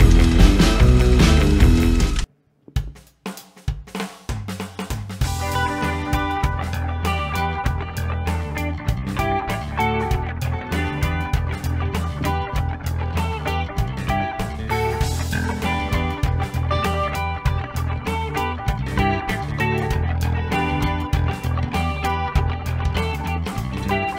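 Rock band playing an instrumental intro on electric guitar, bass guitar and drums. About two seconds in the music cuts out briefly, a few sparse hits follow, and the full band comes in steadily from about five seconds in.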